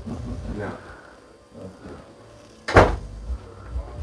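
A single sharp knock, like a wooden cabinet door or drawer shutting, close by about three seconds in, amid faint voices and low room noise.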